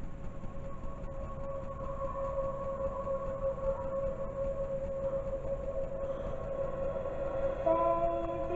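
A film trailer's soundtrack played through a TV speaker: one long held tone over a low rumble, joined near the end by several more notes and a louder swell.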